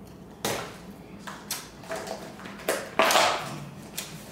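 A few short, sudden clatters and rustles of kitchen items being handled, the loudest near the end.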